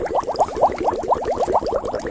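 A fast, very even run of short smacking munching sounds, about a dozen a second, going on steadily.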